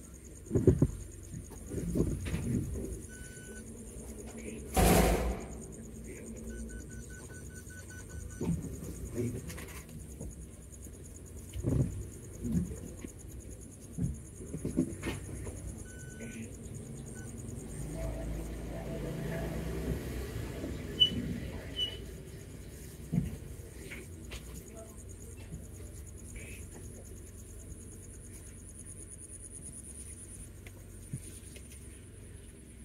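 Cabin noise of a small car driving slowly along a narrow, rough lane: a steady low engine and road rumble, broken by a few short knocks and thumps from bumps, the loudest about five seconds in.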